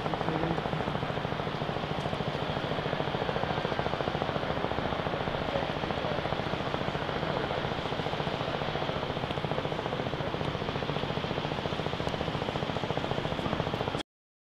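A steady mechanical drone with a fast, even flutter, at an unchanging level.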